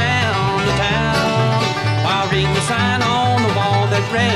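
Bluegrass band playing between vocal lines: banjo and guitar picking over a bass line that moves in steps, with a wavering melody line above.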